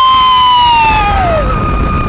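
Roller coaster riders screaming on the drop: one long scream climbs, holds, then slides down in pitch about a second and a half in, with a second steady scream overlapping it. Low wind and train rumble run beneath.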